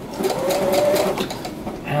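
Brother XR1300 computerized sewing machine running and stitching, its motor and needle making a rapid, even rattle.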